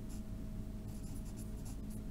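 Pen writing on lined notebook paper: short, faint scratching strokes in quick irregular succession, over a steady low hum.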